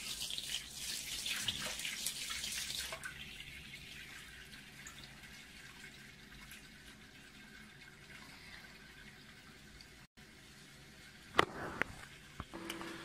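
Warm water running from a kitchen tap into a sink full of soapy water, splashing louder for the first few seconds as a hand breaks the stream, then a softer steady pour. A sharp knock sounds near the end.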